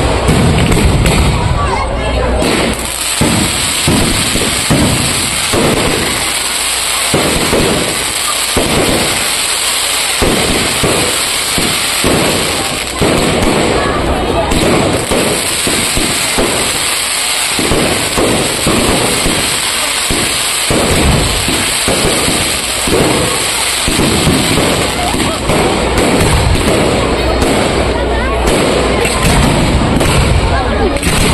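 Aerial fireworks firing a continuous barrage: many quick, overlapping bangs and bursts with no pause.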